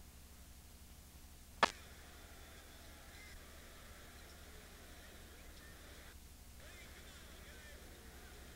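Faint steady low hum of an old tape recording, broken by one sharp click about one and a half seconds in. From about three seconds on come faint, short high squeaks, like basketball shoes on a hardwood court.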